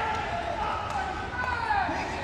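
Several voices shouting and calling in a large hall, overlapping, with a few faint short knocks.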